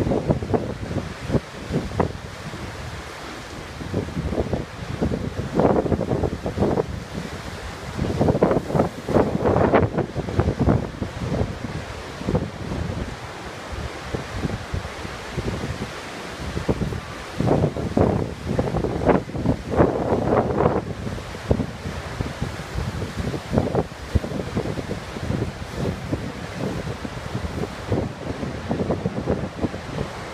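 Ocean surf breaking on a rocky shore, a continuous wash, with wind buffeting the microphone in gusts. It swells louder twice, around a quarter and again about two-thirds of the way through.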